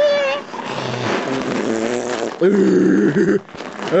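A person making mouth-made battle noises for toy soldiers. A short cry is followed by a long rough, raspy growl and then a louder pitched growl about two and a half seconds in, the noises he uses for the fighting and shooting.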